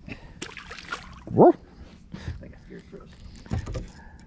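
A man's voice giving a short, quickly rising whoop amid laughter, with a few short knocks near the end from gear being handled on the boat.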